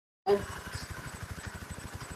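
Video-call audio cutting out to dead silence, then coming back about a quarter second in with a brief sound and a steady background noise from an open microphone, with a fast, even low pulsing under it.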